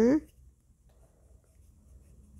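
Faint, scratchy rubbing of a nail buffer block worked back and forth over a fingernail, just after a short 'mm hmm'.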